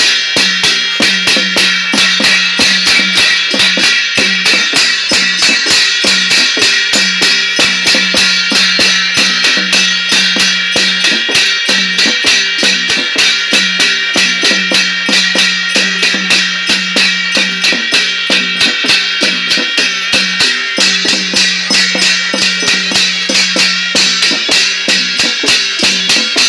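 Traditional Newar drum and cymbal music played live, cymbals clashing with the drum strokes in a fast, even beat over a held low tone.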